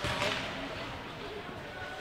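Ice hockey rink ambience during play: a low, even hiss of the game on the ice with faint voices from the arena.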